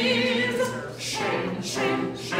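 Opera singers singing. A held note with a wide vibrato tails off about a second in, then the singing picks up again.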